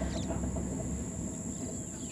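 Steady high-pitched trill of crickets coming in just after the start, over a low rumble that slowly fades away.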